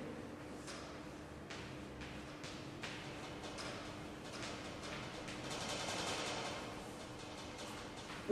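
Faint sounds of writing on a board: a few light taps in the first three seconds and a longer scraping stretch about six seconds in. A steady low hum runs underneath.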